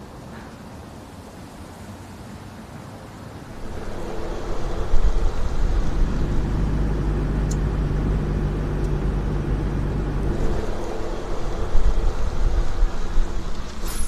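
A car driving along a road: a steady low rumble of engine and tyres that comes up about four seconds in and holds steady, heard from inside the moving car.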